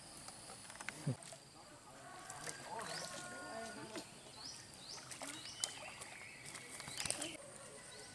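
Faint, distant voices with several short, high, rising chirps and a thin, steady high tone behind them.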